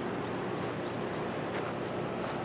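Steady outdoor background noise with a few faint, short high ticks.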